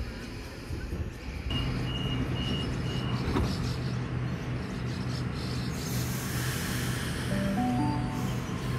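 Sydney Trains Tangara electric train standing at the platform with a steady electrical hum, and a few short high beeps early on. About six seconds in comes a burst of air hiss. Near the end its motors start a stepped whine that rises in pitch as the train starts away.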